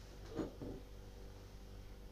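Quiet room tone with a low steady hum, and one brief faint sound about half a second in.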